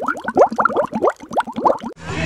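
Bubbling water: a quick run of short plops, each rising in pitch, about seven a second, cut off suddenly at the end.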